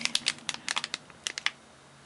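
Clear plastic bag crinkling as it is handled, a quick run of sharp crackles that dies away about a second and a half in.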